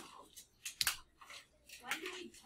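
Classroom noise: scattered clicks and rustling of handled objects, the sharpest click a little before halfway, with faint students' voices near the end.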